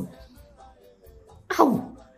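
A short voice-like cry that slides sharply down in pitch, heard once about one and a half seconds in, just after the tail of a similar falling cry at the very start, over faint background music.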